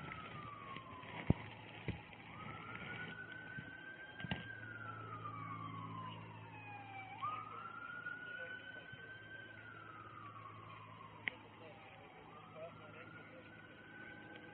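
Emergency-vehicle siren on a slow wail, rising and falling about every five seconds, with a fainter second siren sounding higher up for a few seconds. A few sharp clicks cut in, the loudest about a second in.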